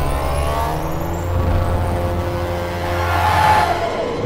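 Cinematic logo-ident sound effect: a deep rumble under a sweeping whoosh with gliding tones. The tones rise toward the end, and the rumble cuts off at the end.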